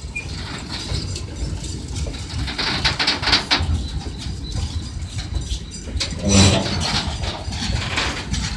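Loaded freight train's boxcars, grain hoppers and tank cars rolling past, with a steady low rumble of wheels on rail. A run of rapid clatter comes about three seconds in, and a louder, short burst a little after six seconds.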